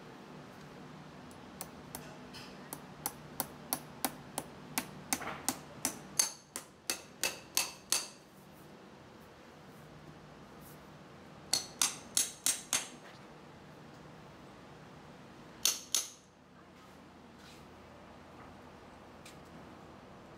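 Farrier's hammer driving horseshoe nails into a hoof wall: sharp ringing metal taps, a run of light taps that grow louder over about six seconds, then a quick group of four or five blows, then two more near the end.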